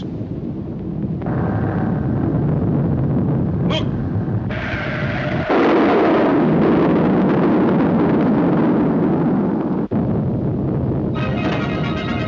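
Cartoon sound effect of a fiery comet crashing into a city street: a continuous rumbling roar that jumps sharply louder about five and a half seconds in and runs on as an explosion. Near the end it gives way to orchestral music.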